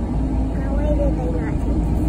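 Steady low rumble of a moving car heard from inside the cabin, with a faint voice over it in the first half.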